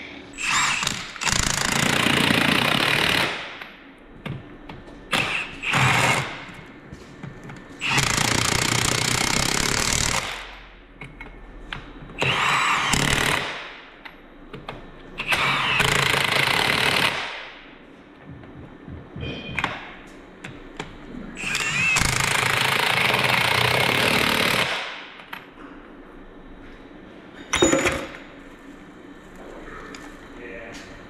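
Cordless impact wrench hammering lug nuts onto a forklift wheel hub, in repeated bursts of one to three seconds with short pauses and brief taps between.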